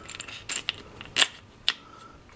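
Several short clicks and taps from a chainsaw carburetor and its black plastic housing being handled and fitted on their mounting bolts, the two sharpest a little past the middle.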